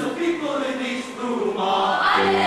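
Mixed choir singing, with several vocal parts sustaining and moving between notes. The sound dips briefly about halfway, then higher voices swell in near the end.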